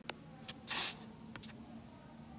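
A few faint clicks, then one short, sharp hiss about two-thirds of a second in, the loudest sound here.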